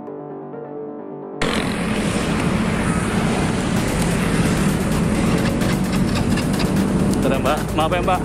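Soft keyboard background music, cut off about a second and a half in by loud, dense road traffic noise at an intersection. A voice comes in near the end.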